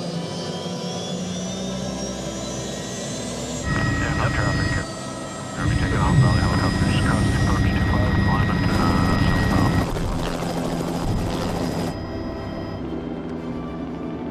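Small turbine helicopter running up for lift-off: a steady engine and rotor drone with a whine that rises over the first few seconds.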